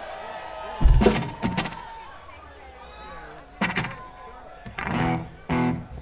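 Between-song stage sound from a live band through the PA: a loud, sudden thump about a second in, then a few short pitched sounds over a low background hum.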